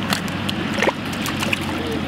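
Water sounds at a stream's edge: a steady wash with small splashes and drips as a caught trout is handled in the water.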